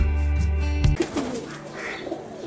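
Background music that stops abruptly about halfway through, followed by domestic pigeons cooing softly in an aviary.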